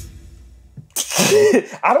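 The tail of a techno music sting fading out, then about a second in a man's sudden, breathy burst of laughter that runs into more laughing.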